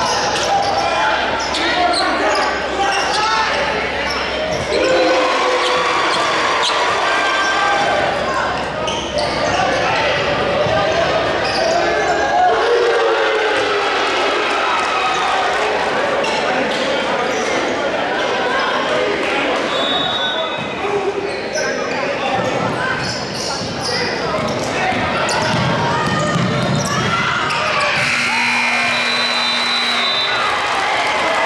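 Crowd voices and shouting echoing through a gymnasium during a basketball game, with a basketball bouncing on the court floor.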